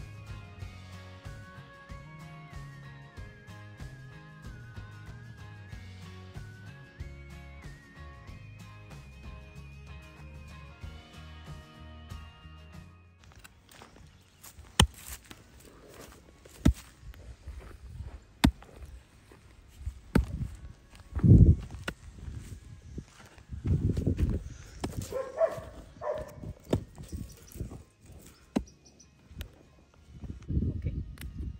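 Background music for the first dozen or so seconds. Then the music stops and hoes chop and scrape into dry, crumbly soil: scattered sharp strikes and a few loud dull thuds, the loudest a little past two-thirds of the way in.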